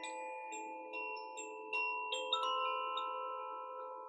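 Hanging bamboo-tube chime, held by its cord between the palms, ringing a loose series of clear, bell-like notes. The notes overlap and linger, then fade out near the end.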